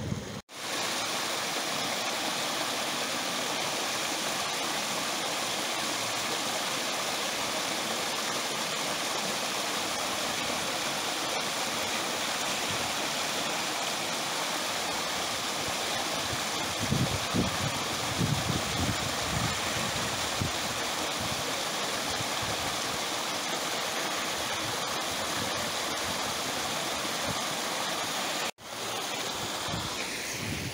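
Small waterfall pouring down a rock chute into a pool: a steady rush of splashing water.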